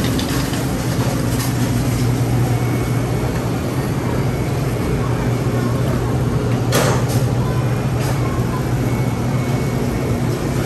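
Shopping cart rolling across a store floor: a steady rumble with a low hum underneath, and a single sharp knock about seven seconds in.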